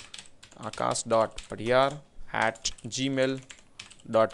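Typing on a computer keyboard, quick short clicks, with a man talking in short phrases between and over the keystrokes.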